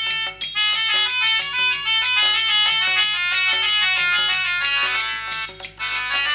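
Live instrumental accompaniment: a harmonium plays a fast running melody over sharp drum strokes, with a short break in the music near the end.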